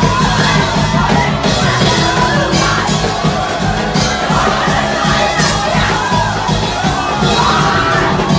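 Live church worship band with drums playing loud, fast music while the congregation shouts and cheers over it.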